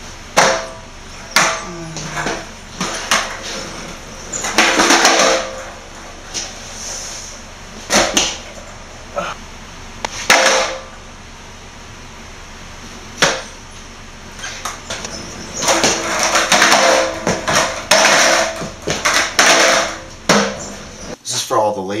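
Skateboard on a bare concrete floor: wheels rolling in short runs, and the deck clacking and slapping down on the concrete again and again as tricks are tried.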